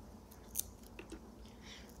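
Faint, dry crackles and small clicks of dried anchovies being split open and cleaned by hand, a few scattered snaps.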